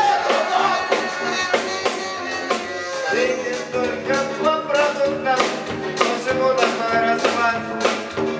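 Live band playing an experimental rock piece: electric guitars, keyboard and a drum kit keeping a steady beat, about three strokes a second.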